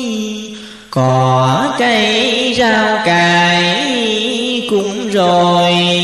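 A voice chanting Vietnamese Buddhist verse in long, drawn-out notes that slide and waver in pitch. There is a brief break about a second in.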